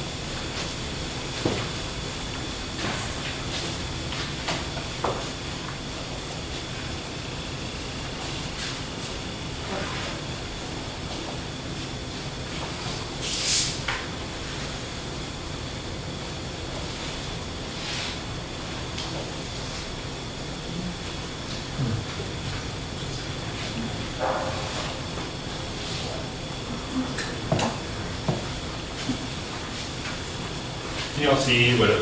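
Steady hiss of room and recording noise, with faint murmured voices and small scattered clicks and knocks. A brief, louder hissing rustle comes about halfway through.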